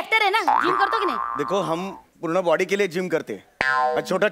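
Voices speaking in a comedy skit, cut across by a comic sound effect: a tone that slides up about half a second in and holds for over a second. A short musical sting starts near the end.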